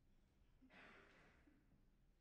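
Near silence, with one faint breath-like hiss lasting under a second, starting a little before the middle.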